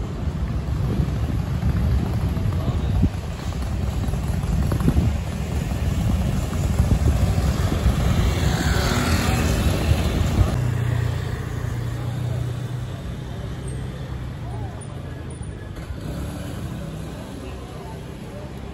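Street traffic: a motor vehicle's engine and tyres rumbling, swelling as it passes about nine seconds in, then a steadier engine hum that fades, with voices of passers-by underneath.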